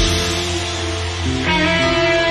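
Rock band playing an instrumental passage live, with an electric guitar playing sustained notes that change step by step over bass and drums.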